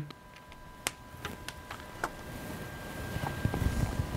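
Quiet handling noise from plugging in small cable connectors: a few sharp little clicks as a USB adapter is pushed onto a cable, then soft rubbing and light knocks as the cables are worked by hand, under a faint steady high whine.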